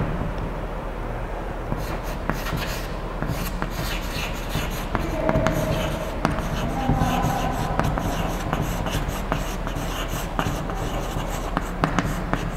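Chalk writing on a blackboard: scratchy strokes and frequent sharp taps as the chalk meets the board, over a steady low room hum.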